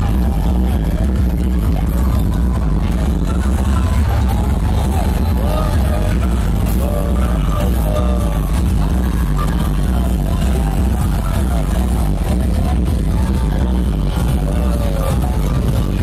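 Truck-mounted stack of speaker cabinets, the Ultima Sound System, playing electronic dance music at high volume with a heavy, steady bass.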